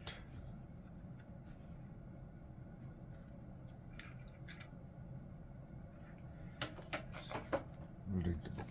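Faint clicks and taps of a small folded plastic quadcopter drone being handled and turned over, with a cluster of sharper clicks and rustles near the end, over a low steady hum.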